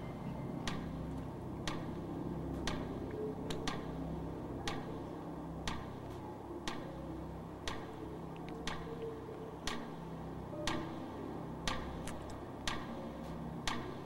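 Game show countdown timer ticking about once a second during a 30-second answer period, over a low droning suspense bed.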